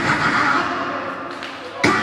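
A person's voice runs on throughout, with a single loud thud just before the end.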